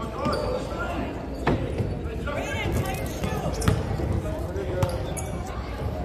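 A basketball bouncing on a hardwood gym floor during play, a few sharp bounces heard over players' and spectators' voices that echo around the gym.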